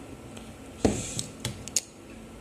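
Handling noise from electronics boards and a plastic wire-harness connector: one sharp click with a light thump a little under a second in, then a few small clicks and taps.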